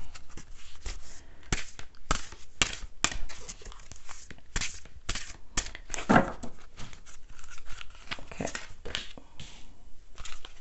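A deck of oracle cards being shuffled and handled by hand, giving a run of quick papery slaps and rustles. A short vocal sound is heard about six seconds in.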